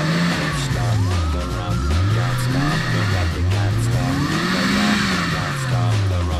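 Off-road 4x4's engine revving up and falling back about three times as it works through a deep muddy water hole, with rock music playing over it.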